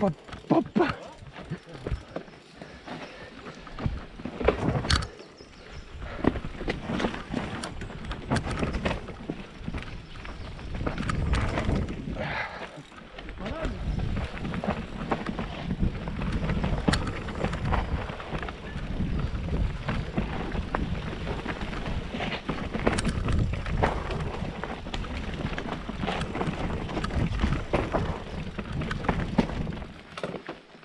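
Mountain bike descending rough dirt singletrack at speed: tyres rumbling over dirt and roots, with frequent knocks and rattles from the frame, chain and suspension over bumps.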